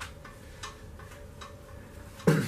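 Short, sharp ticks at a fairly even pace, about two and a half a second and uneven in strength, over a low steady hum.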